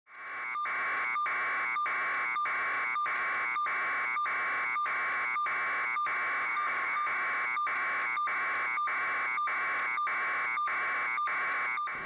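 Electronic buzz pulsing evenly a little under twice a second, fading in at the start and holding a steady level throughout.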